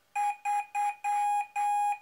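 A microcontroller's small speaker beeps Morse code at one steady pitch: three short tones, then two long ones (dot dot dot dash dash), the digit 3. This is the queried board sending its own address as the first part of its reply.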